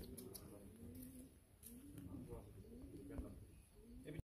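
Faint, low cooing calls repeating every half-second or so over near silence, pigeon-like, with a couple of soft clicks.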